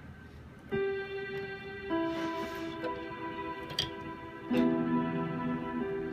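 Keyboard playing held notes that build into a chord: a single note enters about a second in, more notes join about two seconds in, and lower notes are added about four and a half seconds in, all sustained steadily.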